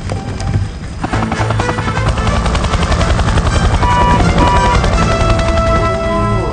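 Helicopter rotor and engine running in flight, a rapid dense blade chop that grows louder about a second in, with film-score music over it.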